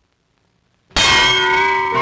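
Cartoon hit sound effect: a sudden metallic clang about a second in, marking a blow to the cat. It rings on afterwards with several bell-like tones.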